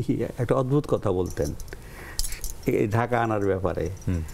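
A man's voice, talking and laughing in short bursts.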